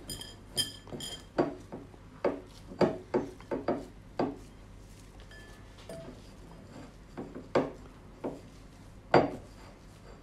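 A hand kneading and pressing crumbly almond-flour cookie dough together in a ceramic bowl, with irregular clinks and knocks against the bowl; the sharpest knock comes near the end.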